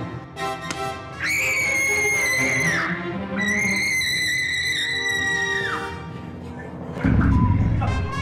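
A teenage girl screaming twice, in two long, very high held screams that each drop in pitch as they break off, over background music. A loud low thud comes near the end.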